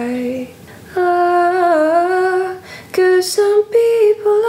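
A woman singing unaccompanied, a short melody of long held notes separated by brief breaths, the longest dipping slightly in pitch in the middle before the line climbs higher near the end.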